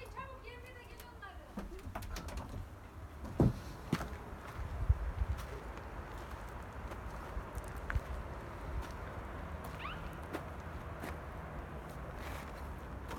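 Pigeons cooing faintly, with two sharp knocks a few seconds in, over wind rumbling on the microphone.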